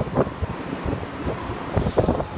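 Tokyu 8590-series train standing at an underground platform with its doors open: a steady rumble with irregular knocks and rustles, and a brief hiss near the end.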